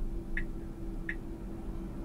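Short, high electronic ticks from a Tesla Model Y's cabin chime, repeating evenly about once every 0.7 s while the car reverses itself into a space on Auto Park. A steady low hum runs underneath.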